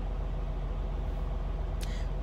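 Steady low hum of an idling engine, even in level throughout, with one faint click near the end.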